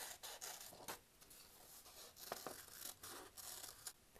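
Scissors cutting a circle out of a folded sheet of colored paper: faint snips and paper rustle as the blades work through two layers.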